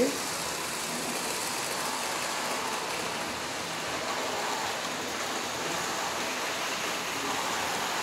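Lionel electric model trains running on three-rail tinplate track, giving a steady, even whirring rush of motors and wheels as the red-and-silver Santa Fe diesel passenger train pulls slowly away.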